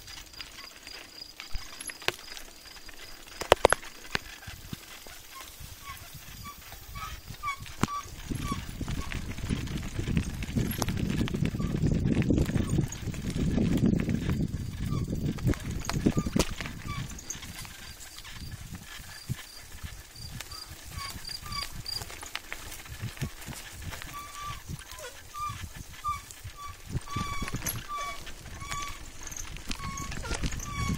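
Bicycle rolling downhill on a rough gravel track: tyres crunching, the bike rattling over bumps, and wind rushing over the phone's microphone as speed builds, loudest about twelve to fourteen seconds in. A faint chirp repeats evenly near the start and again near the end.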